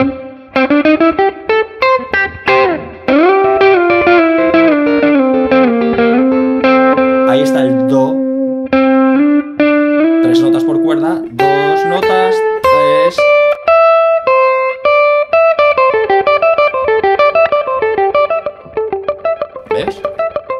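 SG-style electric guitar, amplified, playing melodic minor pentatonic lines: picked single notes in quick runs, with a few held, bent or slid notes in the first half and faster runs in the second half.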